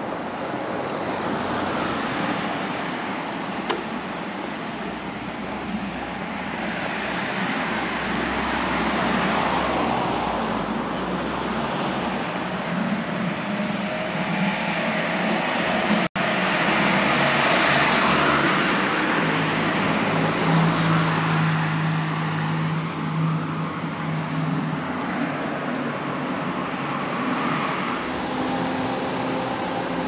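Road traffic on a street: the noise of passing cars swells and fades every few seconds, with a steady low engine hum for several seconds past the middle. The sound cuts out for an instant about sixteen seconds in.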